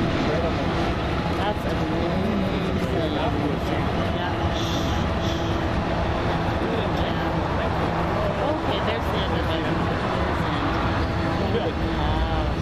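Distant long freight train running through the spiral tunnels: a steady drone with a low hum from its diesel locomotives. A person laughs near the start.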